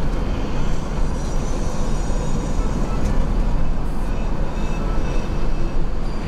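Intercity coach driving at speed, heard from the front of the cabin: a steady, low engine drone and road noise.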